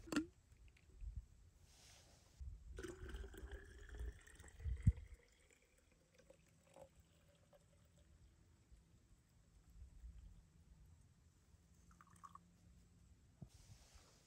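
Hot water poured from a camping pot into a wide-mouth plastic water bottle, the trickle rising in pitch as the bottle fills. A couple of knocks from handling the pot and bottle.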